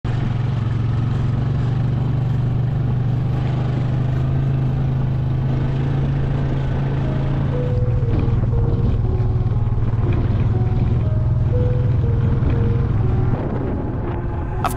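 Background music: the instrumental intro of a rap song, a steady low drone with a simple melody of stepping notes coming in about halfway through.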